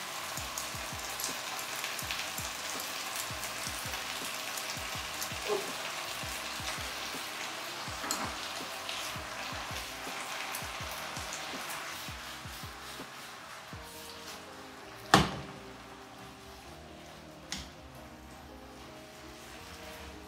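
Water spinach stir-frying in a hot pan: a steady sizzle that grows quieter after about twelve seconds, as a splash of sauce is cooked in. Light clicks of chopsticks against the pan run through it, and a sharp knock about fifteen seconds in is the loudest sound.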